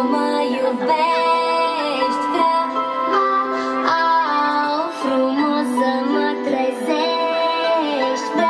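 Music: a children's song, a woman singing a stepping melody of held notes over a backing track, played loud through a stage sound system.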